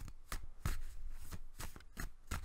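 A deck of tarot cards being shuffled by hand, a run of sharp card snaps about three a second.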